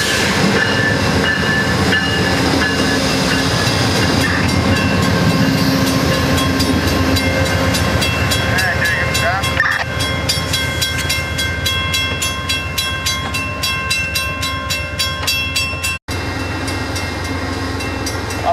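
Amtrak passenger train rolling past close by: diesel locomotive rumble, then the cars' wheels clicking over rail joints in a quick, even rhythm. The sound cuts out for an instant near the end.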